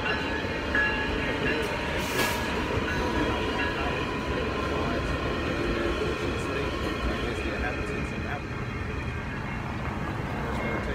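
A train running past: a steady rumble with high, held metallic tones over it, and a short hiss about two seconds in.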